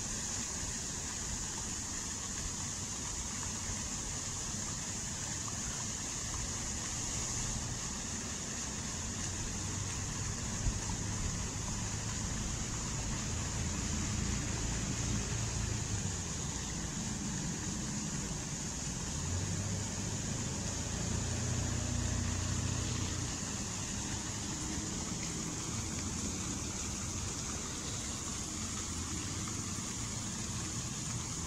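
Fountain water jets splashing steadily into the pool, a constant hiss of spray. A low rumble rises and falls underneath, strongest about two-thirds of the way through.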